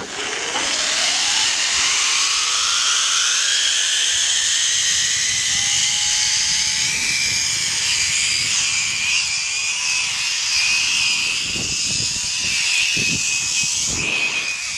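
Zip-line trolley pulleys running along a steel cable: a whine that rises in pitch as the ride gathers speed, then holds high and steady over a rush of air, with a few low knocks near the end.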